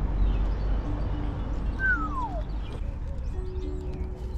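A cat meows once, a single falling call about two seconds in, over background music.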